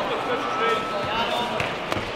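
Shouting voices echo in a large hall over the dull thuds of kickboxers' feet on foam mats, with one sharp knock just before the end.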